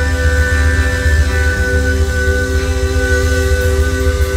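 Live indie rock band playing an instrumental stretch with no singing: guitars and drums over a heavy bass, with notes held long and steady.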